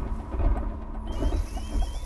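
Electronic sound-design bed under on-screen graphics: a deep, steady rumble with a low hum and faint regular blips, joined about halfway through by a thin high tone that climbs in small steps.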